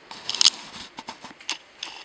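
Handling noise: a loud rustle about half a second in, followed by a few sharp clicks and knocks.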